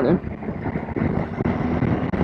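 Triumph Tiger 800 XRX's three-cylinder engine running steadily under wind rush on a helmet-mounted microphone, while riding in traffic.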